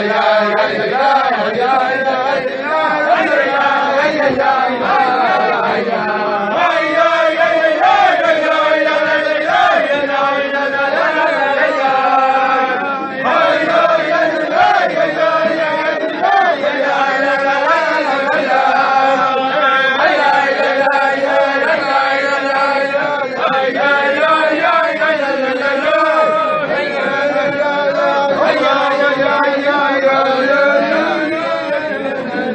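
Men singing a wordless Hasidic niggun: a continuous chanted melody of held notes gliding from pitch to pitch.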